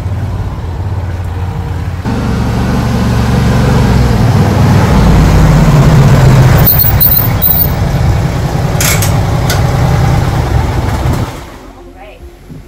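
John Deere Gator four-seat utility vehicle running as it is driven. The sound grows louder from about two seconds in, then cuts off suddenly about a second before the end as the engine is switched off.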